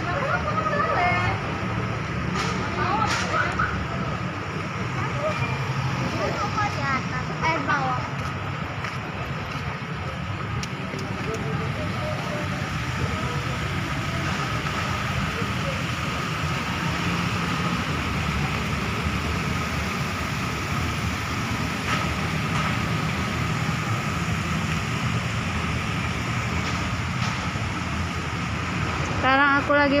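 Steady traffic noise from cars running and moving slowly through a mall's drop-off forecourt, a continuous low engine hum under a wide hiss. A few brief voices come through in the first seconds.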